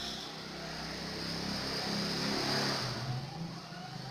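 A motor vehicle passing, a low engine hum with rushing noise that swells to a peak about two and a half seconds in and then fades.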